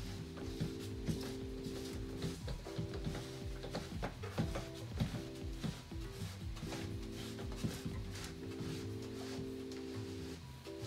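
Background music with long held chords that stop and restart every second or two, over scattered small clicks and knocks of a plastic filter housing being turned onto its head by hand.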